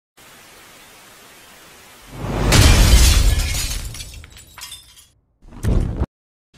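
Intro sound effects: about two seconds of steady TV-static hiss, then a sudden loud crash with a deep low end that fades out over a couple of seconds with crackling. A second short, heavy burst comes just before the end.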